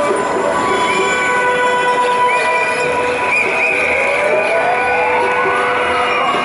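Red London double-decker bus passing close by, its drive giving a steady high whine and then a rising whine over the last two seconds as it pulls away.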